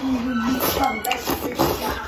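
Close-up eating sounds: wide noodles being slurped and chewed. A short hum from the eater's voice comes at the start.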